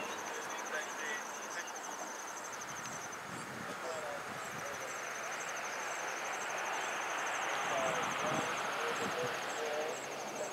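Insects trilling: a fast, even, high-pitched pulsing chirr that breaks off about three seconds in and starts again a second or so later, with a second, fainter insect ticking steadily above it.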